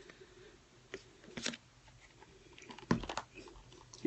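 A few faint, brief clicks and rustles of craft supplies being handled: a sheet of paper and a small plastic-wrapped ink pad. The sharpest click comes about three seconds in.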